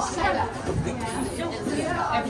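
Several people talking and chattering at once, indistinct voices with no other distinct sound standing out.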